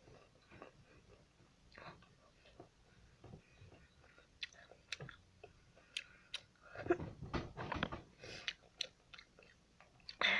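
A person chewing and biting food close to the microphone, with sharp crunchy clicks scattered throughout and a denser, louder stretch of chewing about seven seconds in.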